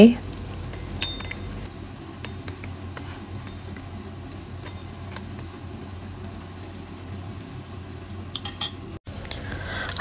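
Metal spoon stirring cornstarch into water in a ceramic bowl, with light scattered clinks and scrapes against the bowl over a low steady hum.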